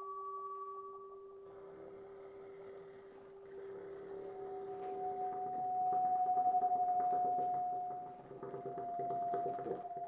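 Bassoon with live electronics: a steady, pure drone is held throughout, joined by a second higher tone about four seconds in, under a fast flickering, crackling texture that swells to its loudest around six to seven seconds and briefly drops away near eight.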